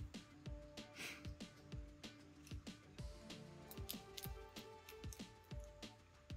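Small irregular plastic clicks and creaks from the stiff print-in-place joints of a 3D-printed articulated crab being worked by hand, the legs still partly fused to the body. Quiet background music plays underneath.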